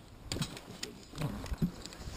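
Scattered light clicks and rattles of paraglider riser and harness hardware being handled close to the camera.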